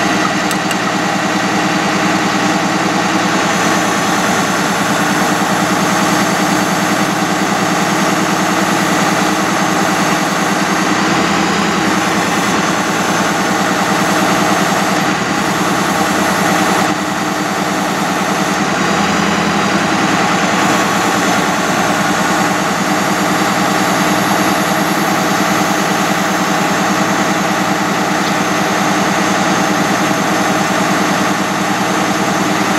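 Ford F-550 truck engine idling steadily with the PTO engaged, driving the hydraulic pump while the Altec AT37G aerial lift boom is operated.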